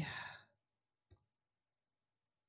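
A man's voice trails off into a breathy exhale that fades out within the first half second. Then near silence, with one faint click about a second in.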